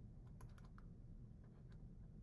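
Near silence with a few faint, short clicks of a stylus tapping and writing on a pen tablet.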